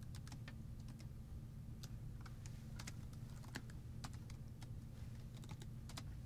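Faint computer keyboard keystrokes: scattered, irregular clicks over a steady low hum.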